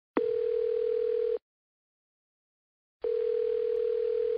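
Telephone ringback tone, the ringing a caller hears on the line: one steady tone about a second long, then after a pause a second ring starting about three seconds in. It is a call ringing unanswered before it goes to voicemail.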